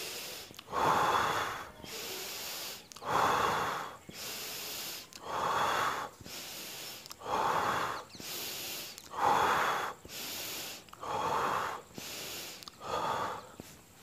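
A man breathing deeply and deliberately in and out in a chest-breathing exercise: about seven slow breath cycles, each about two seconds long, a louder, rushing breath followed by a softer, steadier one.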